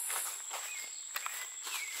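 Soft footsteps and rustling in dry leaf litter, with a steady high insect trill in the background.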